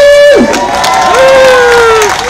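A man's voice over a public-address microphone, very loud, drawn out in long held calls that slowly fall in pitch, with crowd cheering mixed in.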